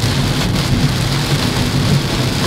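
Heavy rain falling on a moving car's roof and windshield, heard from inside the cabin as a steady, even rush. A constant low hum of engine and road noise runs underneath.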